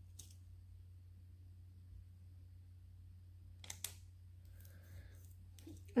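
Faint handling sounds of vinyl transfer tape being pressed onto a chalk-painted glass jar: soft crinkles and a couple of sharp clicks about four seconds in, over a low steady hum.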